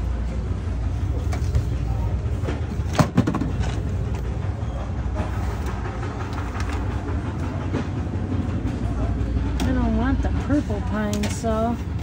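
Steady low rumble of store background noise, with two sharp knocks about three seconds in and a woman's voice speaking near the end.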